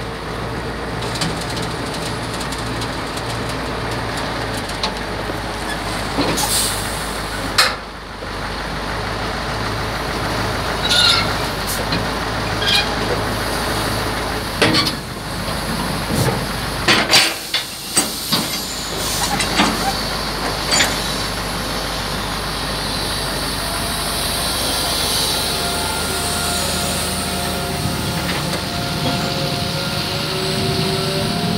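Diesel engine of a Hitachi amphibious excavator running steadily, with a low throb pulsing about twice a second for the first several seconds. From about six seconds in to about twenty, a series of sharp knocks sounds over the engine.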